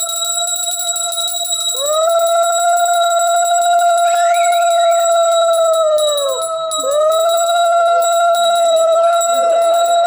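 A conch shell (shankh) is blown in long, steady blasts for the aarti, each rising into its note and dropping off at the end. One blast is sounding at the start, another begins about two seconds in, and a third about seven seconds in. Under it, a hand bell rings fast and continuously.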